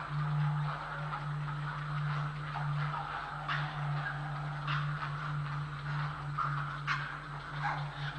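Grey heron chicks calling in the nest: an irregular run of short, rough calls with a few sharper clicks, over a steady low electrical hum.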